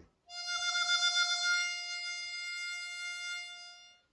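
Diatonic harmonica playing one long held note, the player's cupped hands opening and closing over it for a vibrato effect that makes the note pulse and waver.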